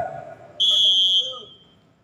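Referee's whistle blown once: a single high, steady blast of about two-thirds of a second that then fades, the volleyball referee's signal to serve.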